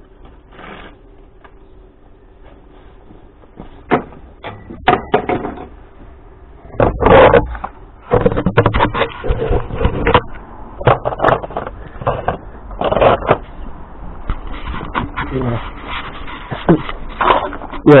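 Knocks, rustling and rumble from a camera being handled and carried, with scattered knocks from scrap being moved. The louder handling bursts start about seven seconds in.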